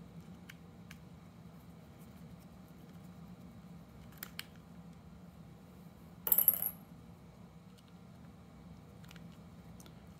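A few faint ticks of a small Allen wrench on a screw. About six seconds in comes a brief, bright metallic clatter with a short ring, like a coin dropping: a small metal object set down or dropped onto a hard surface.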